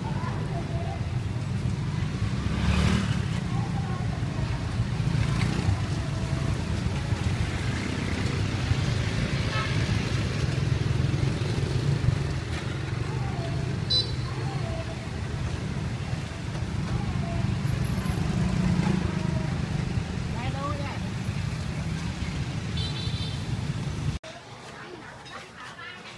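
Street traffic ambience: a steady rumble of passing road vehicles, with people's voices in the background and a short high horn toot about two-thirds through and another near the end.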